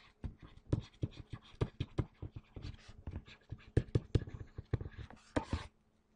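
A stylus handwriting on a pen tablet or touch screen: a quick, irregular run of small taps and scratches as each stroke is drawn, stopping shortly before the end.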